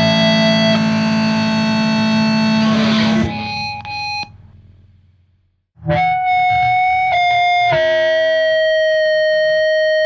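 Hardcore punk recording: distorted electric guitars and the band play until about three seconds in, then stop, leaving a few ringing notes that fade to silence. Just after the middle, a lone distorted electric guitar comes in with one long sustained note that steps in pitch twice.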